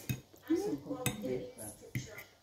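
Metal fork clinking against a plate twice, once at the start and again about a second in, as food is picked up.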